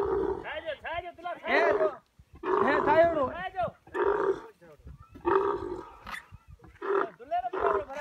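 Female dromedary camel calling while a male mounts her during mating: loud groaning calls in repeated bursts, about one a second, each bending up and down in pitch.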